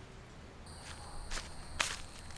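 Footsteps on a path strewn with dry leaves: three steps about half a second apart, the last the loudest.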